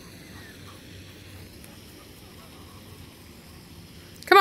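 Quiet outdoor background: a faint, steady low rumble with no distinct event.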